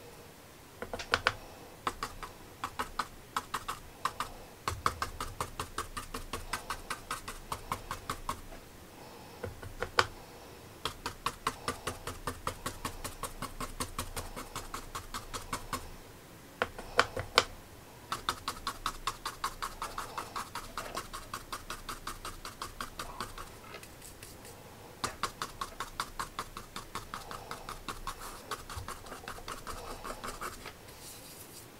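A paintbrush stippled hard against heavy 300lb watercolour paper, tapping rapidly at about four taps a second in runs of several seconds with short pauses between, and a few louder single knocks.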